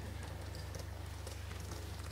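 A pause in speech: a steady low electrical hum with faint room noise.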